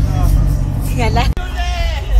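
Low, steady rumble of idling vehicle engines, with a person's voice rising and falling briefly twice in the second half. The sound drops out sharply for an instant between the two calls.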